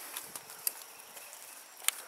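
Two sharp clicks about a second apart over faint outdoor background: the turn latches on the sides of a solar dehydrator's cabinet door being turned to open it.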